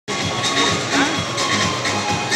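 Football stadium ambience: music over the public-address system with crowd voices and a steady background din.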